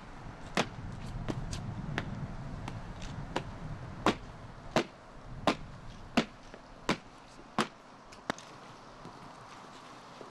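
Boots of an honour guard marching in step on stone paving: sharp, evenly spaced steps about every 0.7 seconds, stopping about eight seconds in.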